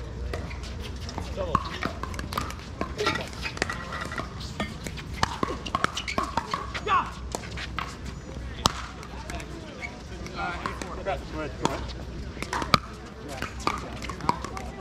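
Pickleball paddles striking a plastic ball during a rally: a string of sharp pops at irregular intervals, the loudest about two thirds of the way through and near the end, over voices from other courts.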